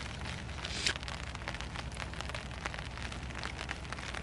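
Steady pitter-patter of cold rain falling on a tarp overhead, a constant hiss dotted with many small drop ticks.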